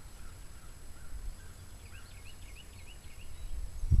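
Outdoor ambience: faint bird chirps, a quick series of short up-and-down calls through the middle, over a low rumble.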